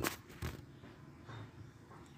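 Two sharp knocks and rustling in the first half second, handling noise as a pet hen pecks at fingers held to her beak, then a faint soft sound from the hen about a second and a half in.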